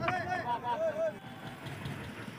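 High-pitched shouts or calls from people in the first second, short rising-and-falling cries one after another, then a murmur of outdoor background noise.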